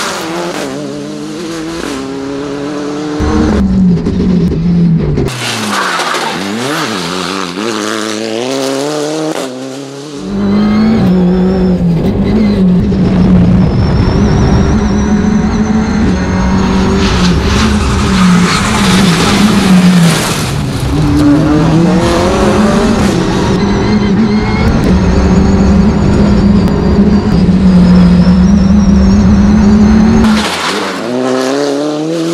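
Abarth 124 Rally car's turbocharged four-cylinder engine driven hard on a rally stage, its pitch climbing and dropping again and again through quick gear changes. It is heard partly from the roadside and partly from inside the cabin, where it is louder and steadier from about ten seconds in.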